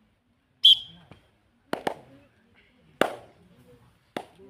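A short high whistle blast about half a second in, then sharp smacks from players' hands: two close together just before two seconds and one at three seconds. Faint voices carry under them.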